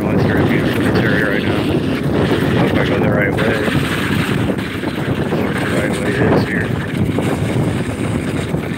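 Wind buffeting the microphone over the steady rolling rumble of a dog-pulled wheeled rig moving along asphalt.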